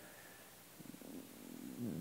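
Quiet room tone, then about a second in a faint, low, creaky sound from a man's voice that grows slightly louder toward the end as he starts to speak again.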